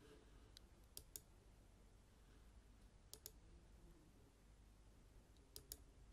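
Faint computer mouse clicks in near silence: three quick pairs of clicks, about one second, three seconds and five and a half seconds in.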